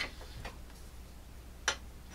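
Two light clicks about a second and a half apart: a steel knife blade knocking against a Smith Tri-Hone sharpening stone as the knife is turned over and set down to sharpen its other side.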